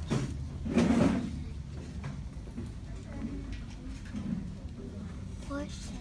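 Indistinct, low voices of pupils talking in a classroom, with a louder bump about a second in.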